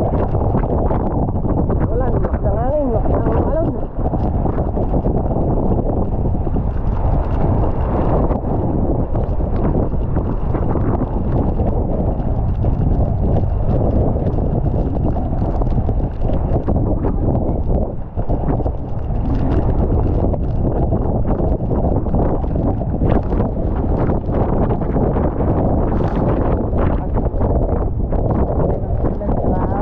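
Stormy sea on a small outrigger fishing boat: wind buffeting the microphone, with waves and spray splashing against the hull and deck in a steady, heavy rush.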